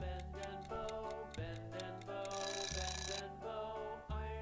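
Background music with pitched notes over a steady bass. A little over two seconds in, a loud, bright ringing alarm sound cuts in for about a second as an on-screen countdown timer runs out.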